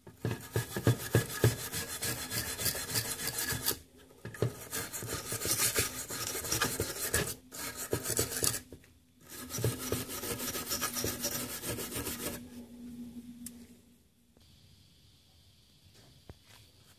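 A hand tool scraping rust off the metal coil frame and ground point of an HEI distributor cap, in rapid back-and-forth strokes. The scraping comes in three spells with short pauses and dies away a couple of seconds before the end.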